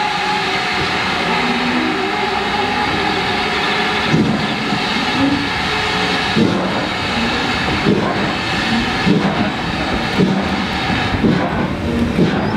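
Steam-hauled train pulling away behind the GWR Manor class 4-6-0 locomotive Foxcote Manor. The tail of the engine's whistle dies away in the first moment. Then comes a steady loud rumble and hiss of the train getting under way, with a knock every second or two as the coaches begin to roll past.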